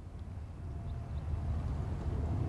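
Outdoor ambience on a golf course: a low, steady rumble that grows slightly louder, with no distinct events.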